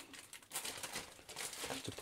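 Clear plastic bag crinkling as it is handled, starting about half a second in as a dense run of small crackles.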